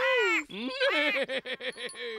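High-pitched cartoon voice cackling with laughter: one long falling call, then a fast run of short notes, about seven a second.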